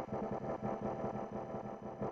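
Electronic dance music in a beatless breakdown: a steady, many-toned synthesizer drone with no kick drum.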